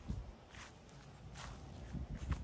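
Quiet footsteps on lawn grass, a couple of soft swishing steps.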